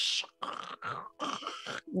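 A woman's vocal imitation of the garbled, stuttering sound of audio played while scrubbing a video timeline: a hissing burst, then a string of short, choppy grunting noises.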